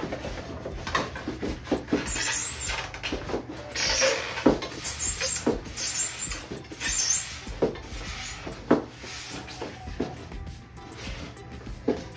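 Plastic wrapping crinkling and a cardboard box being rummaged, with scattered knocks and rustles as packed parts are pulled out of it.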